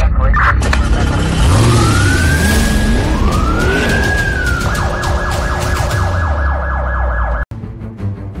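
Emergency siren sound effect over a low drone: two slow rising-and-falling wails, then a fast warbling yelp for about three seconds that cuts off sharply near the end.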